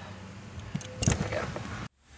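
Faint background noise with one brief spoken word, and a moment of complete silence near the end where the video cuts.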